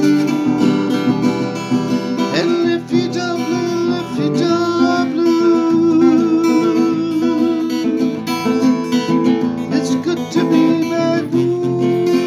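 Acoustic guitar strummed, with a man singing along and holding long, wavering notes.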